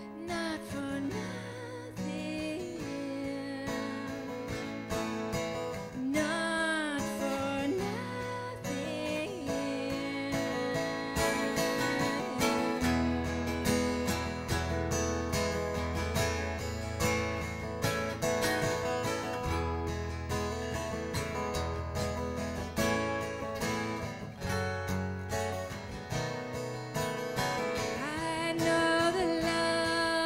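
Two acoustic guitars playing an instrumental break in a folk song, with lower bass notes coming in for a stretch partway through.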